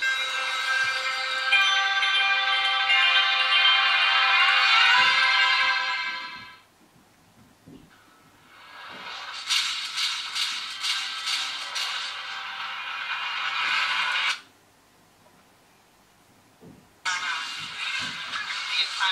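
Music from a YouTube video played through a budget laptop's small built-in speakers, thin and without bass. It pauses about six and a half seconds in, then returns as a movie intro with quick sharp hits that cut off suddenly, and movie dialogue starts near the end.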